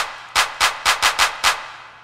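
Electronic clap sample struck eight times in a quick, uneven roll. A reverb tail from a send channel fades out after the last hit.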